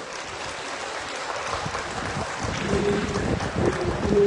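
Wind rushing and buffeting on a phone microphone in an open stadium, gustier from about halfway through. Near the end a held musical note comes in over it.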